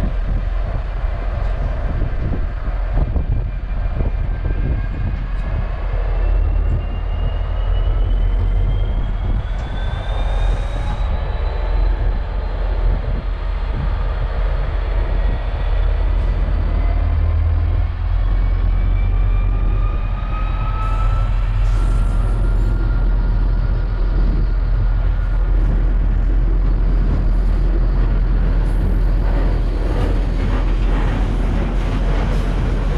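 Class 69 diesel locomotive 69002, with its EMD 12-710 V12 two-stroke engine, slowly hauling a long train of yellow engineering flat wagons: a steady, loud low engine rumble over the continuous rolling of wagon wheels on the rails. High whining tones slide slowly up in pitch through the passing.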